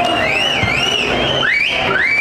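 Audience whistling: several overlapping whistles sweeping up and down in pitch, over a steady crowd din.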